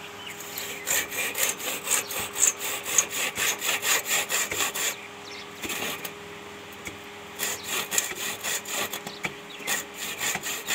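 Small hand saw cutting across a thin tree branch, in quick back-and-forth strokes of about three a second. The sawing stops for about two seconds midway, then starts again.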